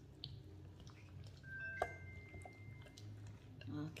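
Faint wet squishing and soft clicks of a gloved hand working green seasoning marinade into raw chicken pieces in a bowl. A sharper click comes a little before halfway, followed by a thin high tone lasting about a second.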